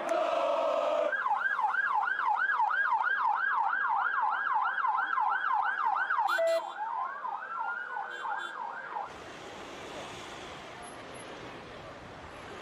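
Police van siren sounding a fast yelp, rising and falling about four times a second. About halfway through it switches to a slower rising wail, then cuts off about nine seconds in. Crowd chanting fills the first second and a low crowd hubbub follows the siren.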